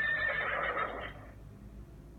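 A horse's whinny: one call with a high, wavering pitch that stops a little over a second in, played back through a tablet's speaker.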